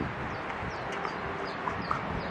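A bird chirping steadily, short high notes about four a second, over a low background rumble.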